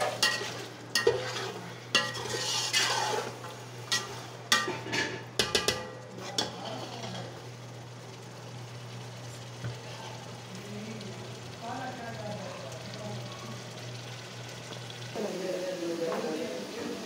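A metal spatula scrapes and clinks against an aluminium pot as chunks of beef are stirred and fried in oil and masala, with sizzling. The scraping stops about seven seconds in, leaving a quieter sizzle over a steady low hum.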